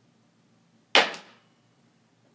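A sharp clack about a second in, with a second knock right after it, dying away within half a second.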